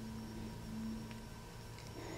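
Quiet room tone with a steady low electrical hum.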